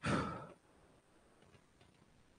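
A man's short sigh, a breath out lasting about half a second, picked up close on a headset microphone.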